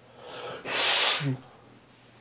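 A man sneezing once: a breathy intake, then a loud hissing burst about two-thirds of a second in, ending with a short voiced sound.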